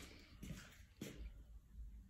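Near silence: room tone with two faint soft ticks, about half a second and a second in.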